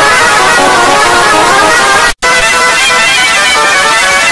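A short jingle run through heavy, harsh distortion effects, loud and noisy with many pitched tones stacked on top of each other. It cuts to silence for an instant about two seconds in and starts over with the next effect.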